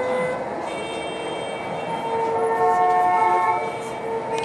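Several steady held tones sounding together as chords, the chord changing a few times.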